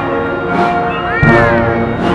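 Procession brass band playing a slow funeral march with held brass chords. A drum beat comes a little past halfway, and with it a short high cry that rises and then falls.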